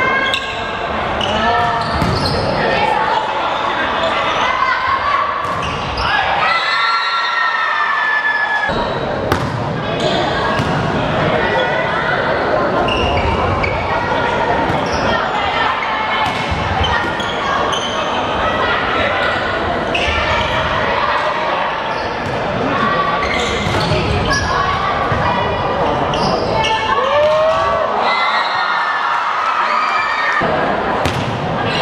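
Indoor volleyball match in a large echoing sports hall: the ball struck by hands in sharp knocks while players and spectators shout and cheer, with long drawn-out calls a few seconds in and again near the end.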